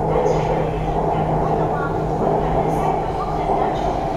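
Bangkok MRT metro train running, heard from inside the carriage: a steady rumble of wheels on the track with a constant low hum.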